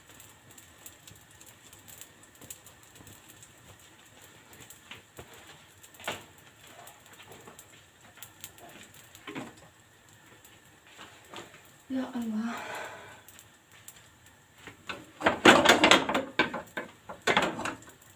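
Faint, irregular crackling of flatbread dough cooking in a hot, lightly oiled heavy pan, the underside setting as bubbles rise. Near twelve seconds and again from about fifteen seconds come louder bursts of voice.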